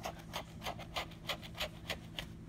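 Scratch-off lottery ticket being scraped with a handheld scraper tool: quick repeated rasping strokes, about three a second, as the coating comes off.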